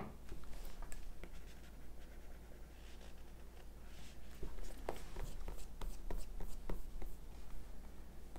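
Stylus tip tapping and rubbing on an iPad's glass screen while erasing: light, irregular clicks that come more often in the second half.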